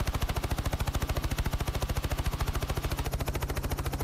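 A news helicopter's rotor, heard from inside the aircraft, beating in a rapid, even chop over a low steady drone.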